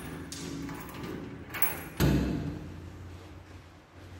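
A door being opened by its vertical handle: a couple of light clicks, then a thud about two seconds in.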